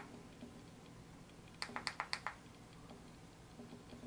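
Push button of an XMAX Carty cartridge vape battery clicked quickly about five times, a little over a second and a half in, to change its voltage setting.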